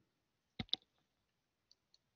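Two short, sharp clicks in quick succession a little over half a second in, otherwise near silence.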